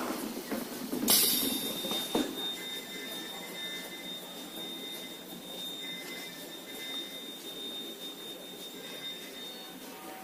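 Spiral paper tube machine running: a steady high whine with a short loud hiss about a second in and a sharp knock about two seconds in.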